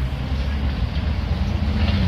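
Volvo crawler excavator's diesel engine running steadily under load as the bucket digs and lifts soil, the engine note rising slightly toward the end. A few light scraping clicks from the bucket and dirt come near the end.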